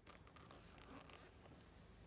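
Faint scrapes and rustles of a hand brushing over metal plate armour, a quick cluster in the first second or so, then only quiet room tone.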